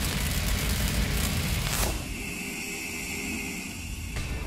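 Cinematic logo-reveal sound effect: the rumbling, noisy tail of a big impact hit dies down, with a falling swoosh a little before halfway, then a quieter steady drone with a thin high tone.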